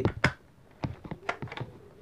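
Half a dozen sharp plastic clicks and taps as a Nerf Flyte CS-10 blaster and its ten-dart magazine are handled.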